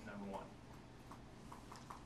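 A brief low voice sound at the start, then a few faint, light taps about every half second in a quiet room.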